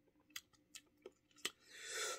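Faint wet mouth clicks and lip smacks of a person tasting a sip of blanco tequila, four short clicks spread over the first second and a half, followed by a soft breath out near the end as the spirit is swallowed.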